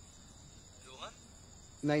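Faint steady chirping of crickets in the night ambience, with a short rising vocal sound about halfway through and a man's voice starting near the end.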